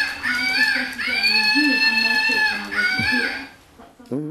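A small dog whining in high, drawn-out whines: a short one, a long one of about a second and a half, then another short one. A low voice murmurs underneath.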